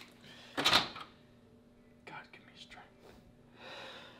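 A hotel gym door's key-card lock and handle being worked: a short, loud clatter about half a second in, then a few faint clicks, over a low steady room hum.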